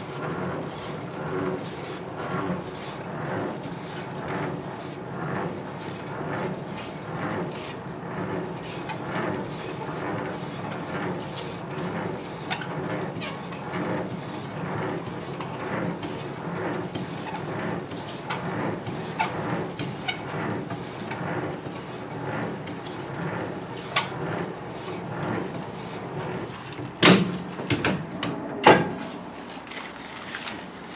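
Semi-trailer landing gear being cranked up by hand: the crank and leg gearing turn with a steady grinding and regular clicking, stroke after stroke. Near the end come two loud metal clanks.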